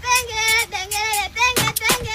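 Background music: a song with a high-pitched sung vocal over a percussive beat.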